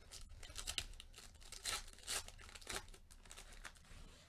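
Foil wrapper of a Panini football card pack being torn open by hand: a run of short rips and crinkles, loudest in the middle.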